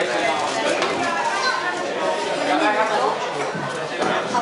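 Restaurant chatter: many diners' voices talking over one another in a large dining room, with no single voice standing out.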